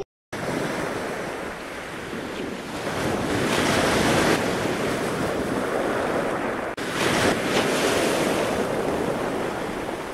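Ocean surf and wind, a steady rushing noise with wind buffeting the microphone. It swells a little after a few seconds and drops out briefly about seven seconds in.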